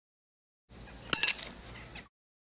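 A single sharp, bright clink about a second in, ringing high and fading within the second, over a faint low hum.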